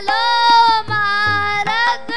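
Sikh kirtan: a voice singing two long held notes with harmonium accompaniment and light tabla strokes.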